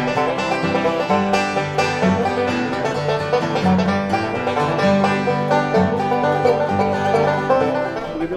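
Bluegrass band playing an up-tempo tune on acoustic string instruments, with banjo picking prominent over a steady bass line.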